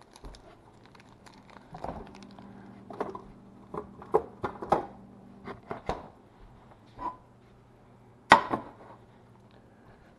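Scattered light knocks, taps and rustles of kitchen handling, with one sharp knock about eight seconds in that is the loudest sound, over a faint low steady hum.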